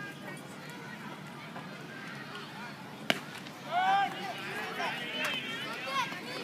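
A baseball bat hits a pitched ball with one sharp crack about three seconds in, and spectators start shouting and cheering right after.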